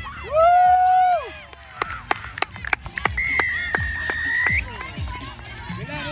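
A long held shout from the sideline, then a few sharp claps, then a referee's whistle blown in one steady blast of about a second and a half, lifting in pitch as it ends.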